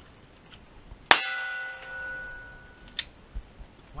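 A Glock 19 pistol shot from the draw, with the struck steel target ringing for about a second and a half. A second, shorter shot follows about two seconds later.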